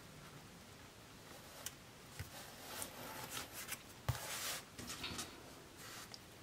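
Hands handling a paper sticker on a planner page: scattered faint taps and short rustles as the sticker is pressed and smoothed down, the loudest about four seconds in.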